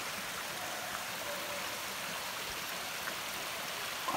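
A small forest stream running over rocks, a steady rushing hiss.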